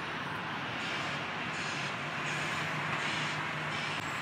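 Steady wash of distant city traffic noise heard from high up, with a faint low hum coming in about a second and a half in.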